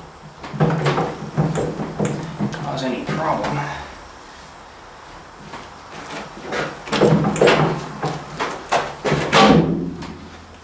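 A man's voice talking indistinctly in two stretches, with light metal clinks and knocks as the radius rod and pin are handled on a tractor's front axle; quieter in the middle.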